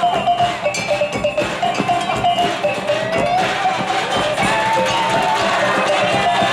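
Minangkabau talempong pacik, small handheld bronze gongs, clanging in a quick interlocking rhythm with tambua barrel drums beating underneath and a held, wavering melody line above.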